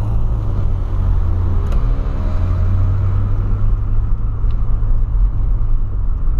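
Cabin sound of a 2008 Volkswagen Polo sedan's 1.6 four-cylinder engine running as the car drives, a steady low drone mixed with road noise.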